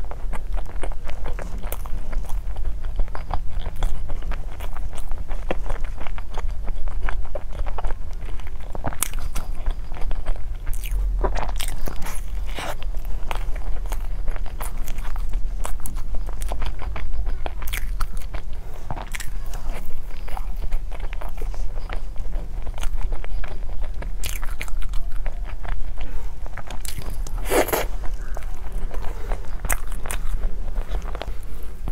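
Close-miked eating: biting into and chewing a taro-paste mochi roll whose mochi layer is not very soft, with many small wet mouth clicks and smacks throughout. A steady low hum runs underneath.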